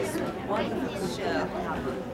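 Speech over a crowd's background chatter in a large hall.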